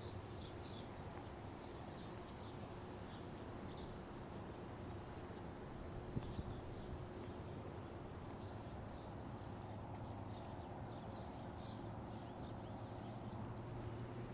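Small birds chirping on and off, with one quick high trill of repeated notes about two seconds in, over a steady background hiss. There is a single short knock about six seconds in.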